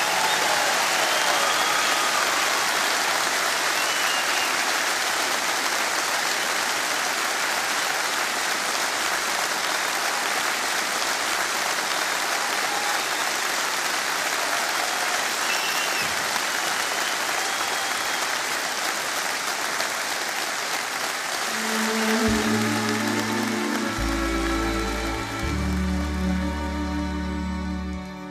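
Concert audience applauding steadily, with a few whistles. Near the end an orchestra's strings begin a slow piece with long held notes.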